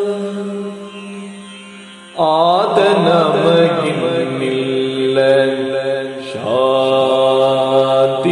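A male Yakshagana bhagavata singing slow, drawn-out phrases over a steady drone. A held note fades away, then a new phrase starts with a rising swoop about two seconds in, and another begins the same way near the end.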